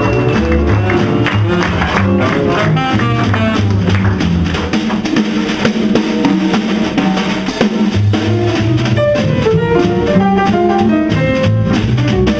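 Live small-group jazz: a saxophone plays a melodic line over walking double bass and a drum kit with ride cymbal and snare.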